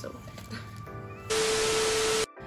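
TV static transition sound effect: a sudden loud hiss of white noise with a steady beep tone, starting about two-thirds of the way through over quiet background music.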